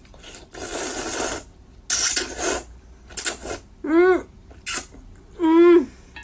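A person slurping cold noodles in several quick noisy slurps, then humming 'mm' twice with a closed mouth while chewing, the second hum held a little longer.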